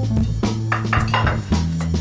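A ceramic tray clinking and scraping a few times on a tiled countertop as it is set down, over background music with a steady beat.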